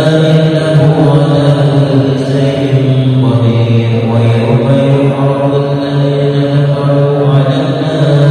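A male voice chanting a Quran recitation in long, melodic, sustained phrases.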